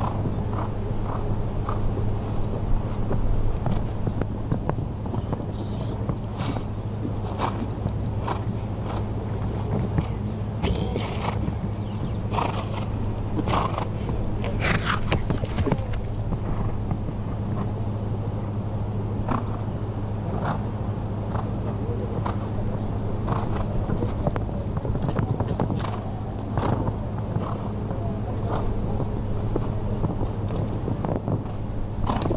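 A steady low hum with irregular short knocks and clicks over it, most frequent about ten to sixteen seconds in.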